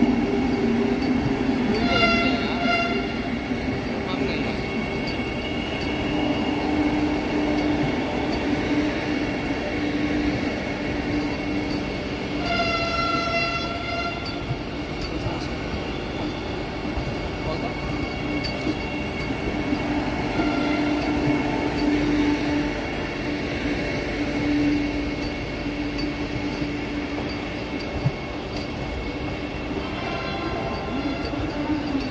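Vande Bharat Express electric train set rolling slowly past, a steady running rumble and hum, with a train horn sounding briefly twice, about two seconds in and again about twelve seconds in.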